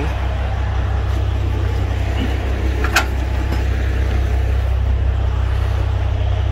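Steady low vehicle rumble, with one sharp click about three seconds in.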